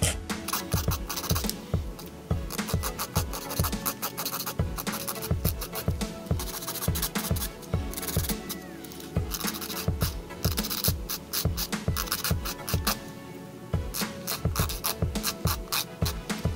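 A nail file scratching in quick side-to-side strokes across the free edges of press-on gel nail tips, filing away the small tab left at each tip. Background music plays underneath.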